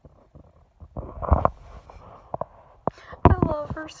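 Light scratching and fabric rustling as a cat paws at a quilted bedspread, with a louder rustling thump about a second in.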